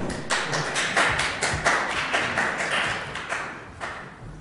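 Audience applauding, a brief scattering of claps that thins out just before the end.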